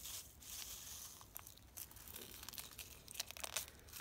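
Faint crinkling of an instant coffee sachet as it is held, tipped and shaken to empty its granules into a bowl of hot water, with a few short crackles.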